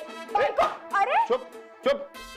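Marathi dialogue in sharply rising and falling voices over a steady background music score.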